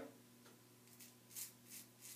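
Faint scraping of a Dovo Shavette straight razor's half double-edge blade drawn through gel-lubricated beard stubble on the neck, in about three short strokes from about a second in.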